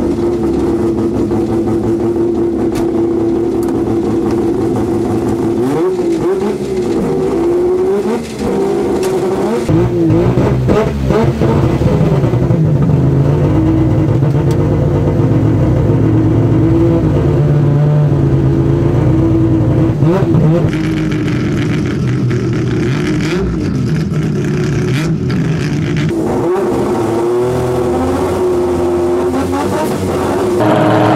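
Turbocharged 20B three-rotor rotary engine of a drag-racing Mazda6 running at idle, with short blips of the throttle around six to twelve seconds in and again about twenty seconds in.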